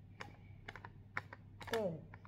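A handful of light, irregular clicks and taps as fingers handle a plastic baby bottle.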